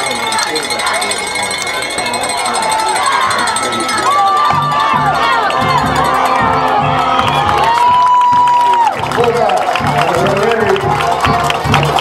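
High school football stadium crowd cheering and shouting during a running play, with drum-led music joining in about four seconds in.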